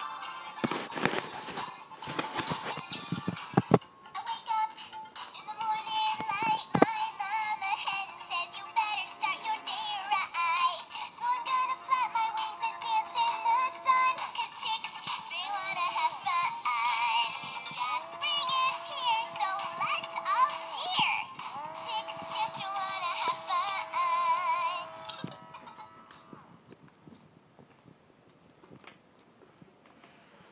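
Battery-powered singing animated duck toy playing its tinny electronic song with a synthetic singing voice, on low batteries. Handling clicks and rattles come first, the song runs from about four seconds in, and it stops near the end.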